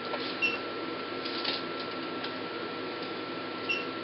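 Intense pulsed light (IPL) machine firing its handpiece on the skin: two short beep-clicks about three seconds apart, one pulse each. Under them runs the steady hum of the running unit, with a thin constant whine.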